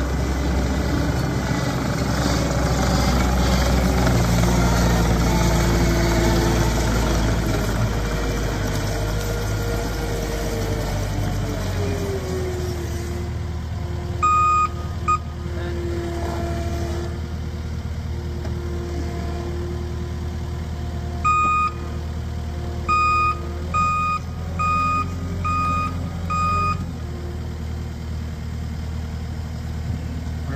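Caterpillar 259D compact track loader's diesel engine running as the machine drives over gravel, its pitch shifting in the first half. In the second half its backup alarm beeps in short runs, ending with five beeps about a second apart.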